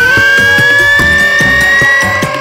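Electronic background music: a held synth note slowly rising in pitch over a steady beat of about four hits a second.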